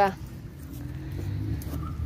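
Low rumble of a car engine running nearby, swelling a little from about a second in, after a woman's brief word at the very start.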